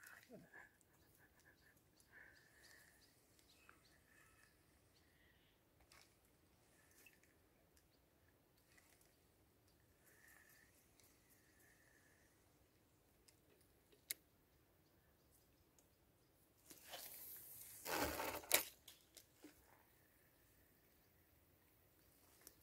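Near silence with a few faint high-pitched notes, a single click about two-thirds of the way through, and a brief rustle near the end, the loudest sound in it.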